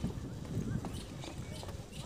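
Footsteps on the wooden planks of a footbridge: a run of low, irregular thuds from walking.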